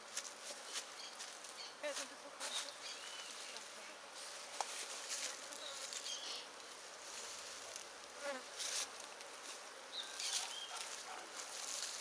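Honey bees buzzing around an open hive, with scattered sharp clicks and scrapes as the wooden frames are handled.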